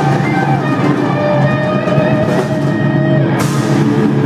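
Live death-thrash metal played loud on two distorted electric guitars over a drum kit, with held guitar notes and a cymbal crash near the end.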